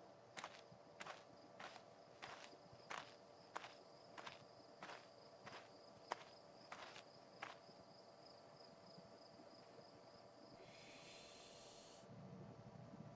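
Soft footstep sound effects of a cartoon kiwi walking, about a dozen evenly spaced steps roughly two-thirds of a second apart, stopping about seven and a half seconds in. A faint steady high tone runs underneath, and a soft hiss starts near the end.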